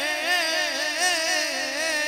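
A man's solo voice singing a naat, drawing out a wordless vowel in an ornamented melisma whose pitch wavers up and down several times a second.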